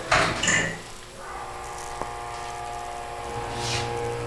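Hydraulic elevator's pump motor humming steadily as the car starts to go up, with a single click about two seconds in and a lower hum joining near the end.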